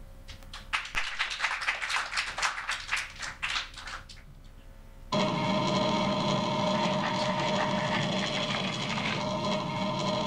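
Audience clapping for a few seconds. About five seconds in, a steady mechanical sound starts abruptly, with a low rumble, steady tones and scratchiness: a recording of a graphophone (wax-cylinder phonograph) playing, with its rotary motor rumbling and its needle riding the cylinder's grooves, over the room's speakers.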